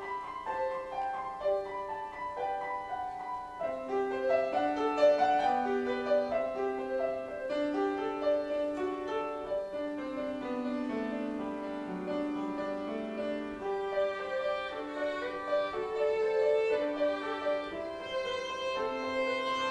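Violin and grand piano duet: the violin carries a melody of held notes over piano accompaniment, with vibrato on the longer notes about halfway through.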